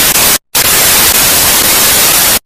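Loud hiss of TV static, even from low to high, used as a glitch sound effect. It cuts out briefly about half a second in, then resumes.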